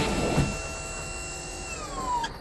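Cartoon sound effect of a motorised lift platform rising out of the ground: a steady mechanical whine that falls in pitch near the end as the lift comes to a stop.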